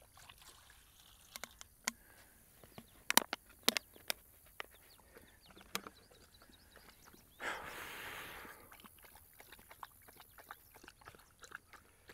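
A German shorthaired pointer moving close by in dry grass: scattered sharp clicks and rustles, with one short breathy burst about seven and a half seconds in.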